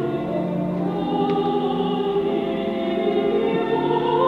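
A mixed choir singing an oratorio with organ accompaniment, in long held chords that change every second or so.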